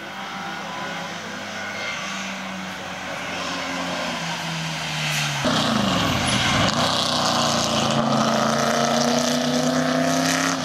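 Historic racing car engines under hard acceleration passing close by on a race circuit. The engine note climbs steadily as a car approaches; about five and a half seconds in a louder car takes over, its pitch dipping and then climbing again as it accelerates away.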